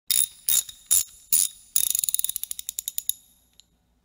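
Sound effect of a curtain being hauled up by its rope through a ratchet: four separate clicking pulls about half a second apart, then a fast run of ratchet clicks that fades out, with one last faint tick.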